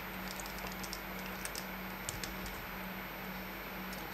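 Faint, irregular small clicks and ticks of a precision screwdriver working a tiny Torx screw in a Fitbit Charge 3's case, over a low steady hum.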